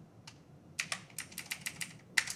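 Computer keyboard being typed on: a couple of key clicks at the start, then a quicker run of keystrokes through the second half.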